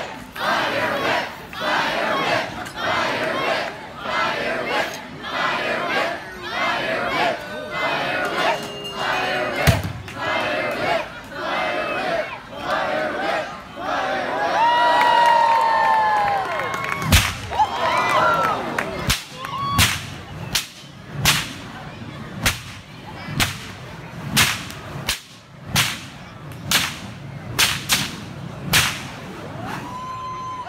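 Crowd chanting "Fire whip!" in a steady rhythm, rising into cheers and whoops about halfway through. A bullwhip then cracks sharply again and again, about three cracks every two seconds, through the second half.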